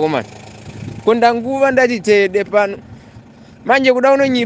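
A voice speaking in short phrases with pauses, over low steady background noise.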